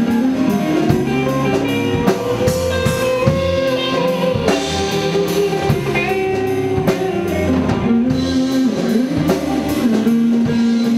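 Live rock band playing: electric guitar with long held notes over keyboard, electric bass and a drum kit with regular cymbal strikes.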